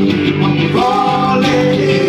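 Live acoustic music: a man singing over an acoustic guitar, his voice sliding up into a long held note just under a second in.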